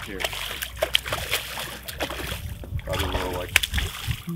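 A hooked snook of about 18 to 20 inches thrashing at the surface beside the boat, a quick run of sharp splashes.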